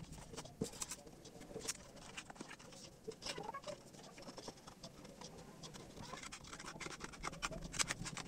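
Scissors snipping into a cardboard cigarette pack, with the paper and foil of the pack crinkling as it is handled: scattered faint snips and crackles.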